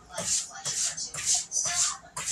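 A cat licking its fur while grooming, with short rasping licks about twice a second.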